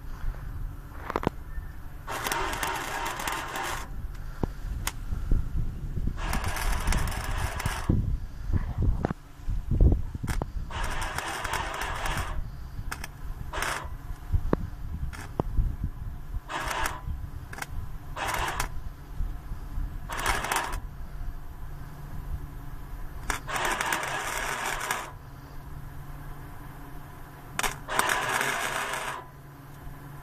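Electric arc welding on sheet steel: about ten short bursts of crackling arc, each one to two seconds, as the welder is struck and stopped in stitches. A steady low hum runs between the welds.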